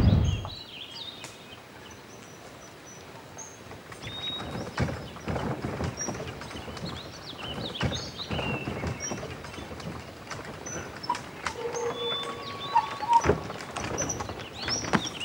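Birds chirping over outdoor background noise, with a loud rushing burst at the very start and scattered soft thumps.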